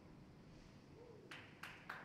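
Near silence with faint low background noise; in the second half, three short clicks about a third of a second apart.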